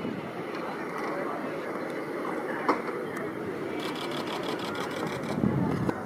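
Outdoor athletics-ground ambience: a steady murmur of distant spectators' chatter, with a sharp click about two and a half seconds in and a brief louder swell near the end.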